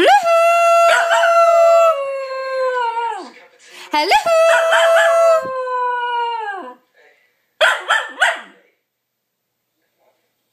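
A cocker spaniel puppy howling: two long howls, each sliding up at the start, held, then sliding down at the end, the second starting about four seconds in. The howls answer a person calling 'Hello!'.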